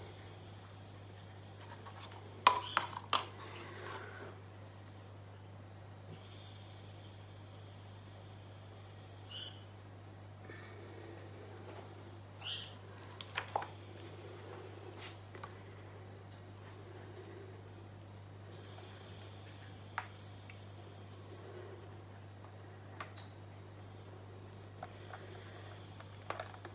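Quiet room with a steady low hum and a few light knocks and clicks as a plastic paint cup is handled and set down on the table during an acrylic pour.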